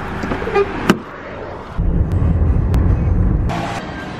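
A car running close by, a low steady rumble that grows loud for about two seconds in the middle, with a sharp click about a second in.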